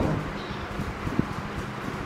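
Marker pen writing on a whiteboard, soft strokes over a steady low background noise, with one short tap a little past halfway.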